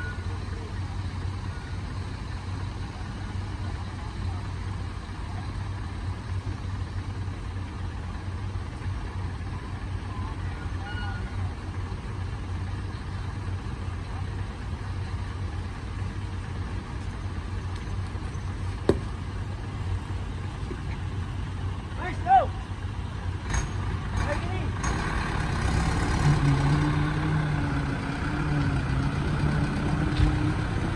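Truck engine idling steadily, with two sharp knocks about two-thirds of the way through. Over the last few seconds a second engine note comes in and grows louder.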